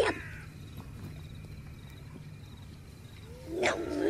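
Loud roar-like cries: one breaks off right at the start, and another rises in pitch and swells near the end. Between them there is a quieter steady background hiss.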